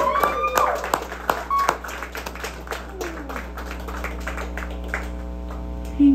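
A small crowd clapping and whooping after a song, the claps thinning out after about three seconds, over a steady electrical hum from the stage amplifiers.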